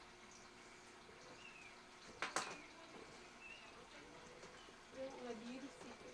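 Quiet room tone broken by one sharp knock or click about two seconds in, with faint voices starting near the end.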